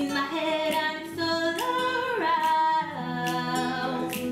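A woman's voice singing held, gliding notes over acoustic guitar, with sharp clicks keeping a steady beat.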